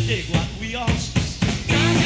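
Rock music. The full band sound drops away into a short break of about five separate sharp hits, then comes back in at the end.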